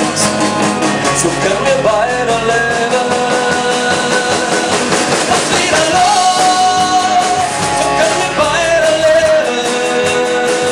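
Live rock band playing an instrumental passage with drums, electric guitar and bass guitar, with a sustained lead melody line that bends and slides in pitch.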